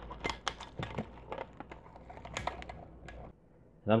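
Plastic bag crinkling and crackling as it is stretched over the mouth of a glass mason jar and held down with a rubber band: a quick run of small clicks and crackles that stops about three seconds in.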